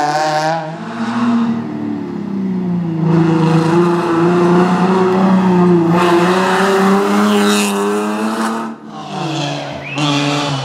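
Rally car engines revving hard through a tight hairpin, one car after another: a Peugeot 206 pulls away, then a second car comes through. Pitch rises and falls with lift-offs and gear changes.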